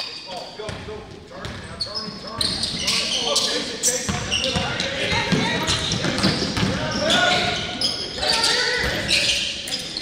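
A basketball dribbled on a hardwood gym court, with repeated bounces, short high sneaker squeaks and players' indistinct shouts echoing around the gym. It gets busier about two seconds in.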